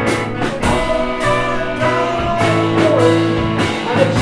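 Live rock band playing: a strummed electric guitar over a drum kit, with sharp cymbal and drum hits falling every half second or so.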